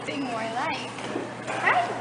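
A dog whining and yipping in short, high cries that rise and fall in pitch, the highest and loudest near the end.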